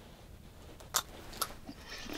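Two short, sharp clicks about half a second apart over a quiet background, from an ice-fishing rod and reel being handled as the line is jigged just before a hookset.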